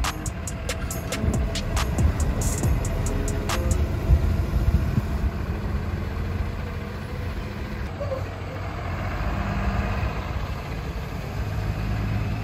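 School bus engine running with a steady low rumble as the bus drives away.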